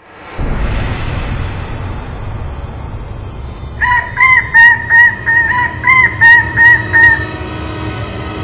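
Low rumbling drone of a cinematic title intro, with a quick run of about ten short, loud honks in the middle, about three a second.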